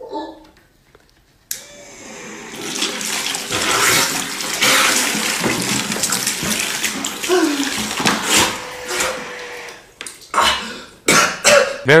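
A corded, motorized 'super straw' sucking liquid from a bowl, with loud rushing, gurgling water and a faint steady motor hum from about a second and a half in. The liquid sprays back out over the user. Several short, sharp vocal bursts come near the end.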